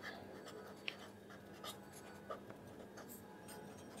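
Blue felt-tip pen writing on paper, faint short scratching strokes as letters are formed.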